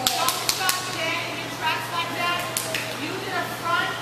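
People talking in a large indoor hall, with four quick sharp taps in the first second and another a little past halfway.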